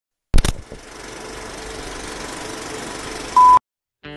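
Logo-sting sound effect of a film projector: a loud click as it starts, then a steady mechanical whirring rattle. It ends in a short, loud, high single-pitched beep.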